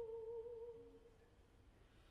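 Baroque opera music: a single soft held note fades away about a second in, with a brief lower note just before it dies. Then near silence.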